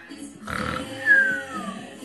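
A young girl's silly vocal noise: a short grunt about half a second in, then a high squeal that falls in pitch.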